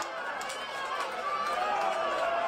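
Several people's voices calling and chattering over outdoor stadium ambience during a football goal celebration.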